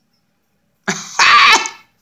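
A woman coughs once about a second in: a short catch, then a louder burst lasting about half a second.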